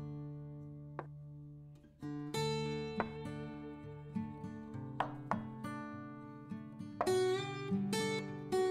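Background music of plucked-string notes, each starting sharply and ringing out, with a short lull a little before two seconds in.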